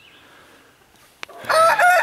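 A rooster crows, starting about a second and a half in, after a quiet spell with faint bird chirps and a single sharp click.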